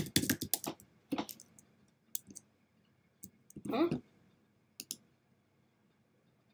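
Typing on a computer keyboard: a quick run of key clicks in the first second or so, then a few single keystrokes.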